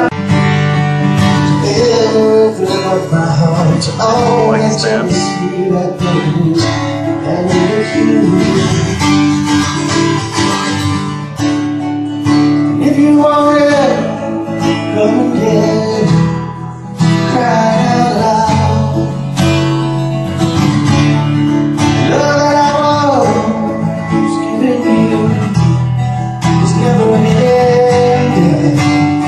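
Live acoustic guitar music, strummed, with a singing voice over it at times.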